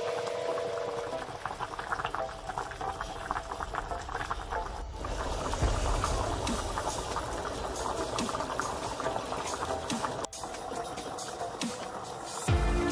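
Pot of chicken stew in white-wine broth boiling, a dense crackle of bursting bubbles, with the sound jumping abruptly about five and ten seconds in.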